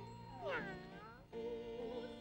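A cat's meow, one drawn-out falling call about half a second in, over sustained background music; a wavering held musical note follows near the end.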